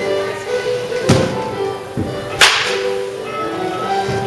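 Baseball bat striking a ball in a batting-cage swing: one sharp crack about two and a half seconds in, the loudest sound, with a dull thud a little after a second. Background music plays throughout.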